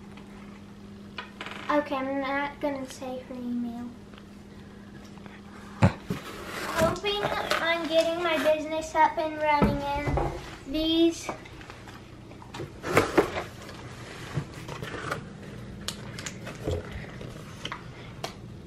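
A child's voice talking softly in two stretches, with scattered clicks and knocks from plastic thread cones and the cardboard box being handled.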